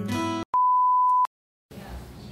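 A man singing to acoustic guitar cuts off abruptly. After a moment of dead silence, a single steady high electronic beep sounds for under a second and stops as suddenly.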